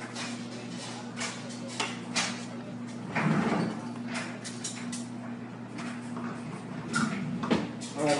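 Scattered light knocks and clicks of a glass jar, its screw lid and utensils being handled on a countertop, over a steady low hum, with a louder handling sound about three seconds in.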